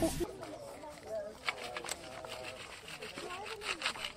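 A short laugh, then faint, low voices with a few light scrapes of a tool in dry soil.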